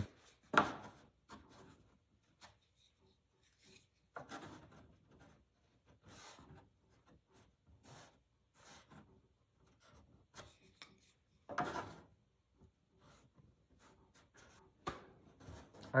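A few faint, scattered knocks and rubs of a wooden end piece being handled and fitted against the end of a cedar-strip paddle board.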